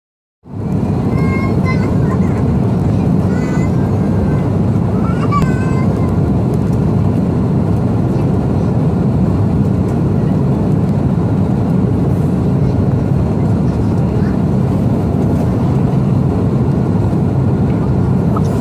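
Steady jet airliner cabin noise on approach, the engines and airflow running at an even level, heard from a window seat with the flaps extended. The sound fades in at the very start, and faint voices are heard over it in the first several seconds.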